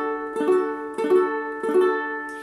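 Ukulele strummed on a D major chord, three strums a little over half a second apart, each left ringing.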